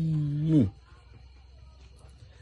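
A man's voice holding one long, drawn-out vowel at a steady pitch, which stops under a second in, followed by a pause with only faint room noise.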